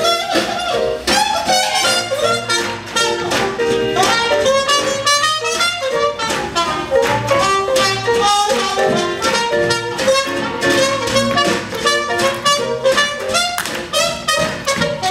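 Live swing jazz band playing an instrumental passage with horns, upright bass and drums over a steady, evenly spaced beat.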